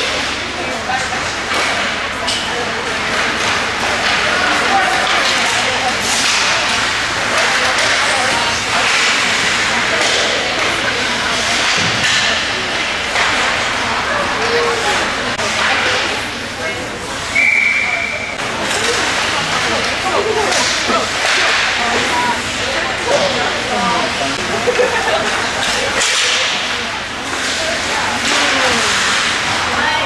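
Ice hockey rink sounds: skate blades scraping and hissing on the ice as players skate, with sticks and puck clattering and voices in the arena. One short whistle blast sounds about 17 seconds in, typical of a referee stopping play.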